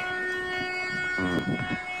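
A steady, unwavering droning tone with several pitches stacked together, with a brief burst of a man's voice in the second half.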